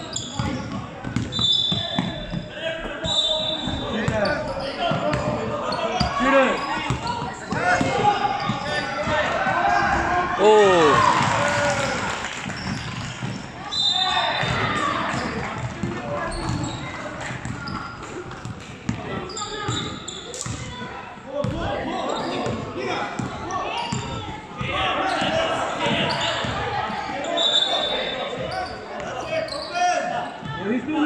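Basketball being dribbled on a hardwood court during a game, with players and spectators calling out, in a large echoing gym.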